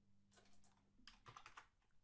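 Faint computer keyboard typing: two quick runs of keystrokes as a short command is typed at the keyboard.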